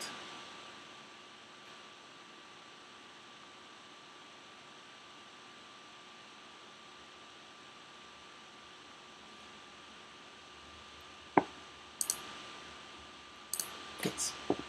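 Low steady room hiss with a faint steady whine, then three sharp clicks of a computer mouse in the last few seconds, the first the loudest.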